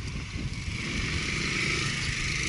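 Wind buffeting the handlebar-mounted action camera's microphone while riding a road bike, with road and tyre hiss that grows louder about half a second in.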